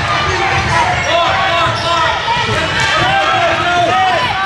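Basketball game on a hardwood gym floor: many short sneaker squeaks as players run and cut, over the ball bouncing and the voices of players and spectators in the hall.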